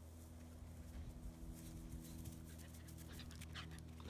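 A ten-week-old German Shepherd puppy panting in quick short breaths, starting about a second and a half in, over a faint steady low hum.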